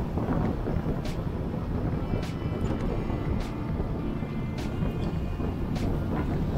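Motorcycle engine running steadily under way, with wind and road rumble on the microphone and a sharp tick about once a second.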